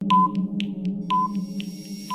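Quiz countdown-timer sound effect: a short beep once a second over a steady synthesised drone, with quick ticks about four times a second.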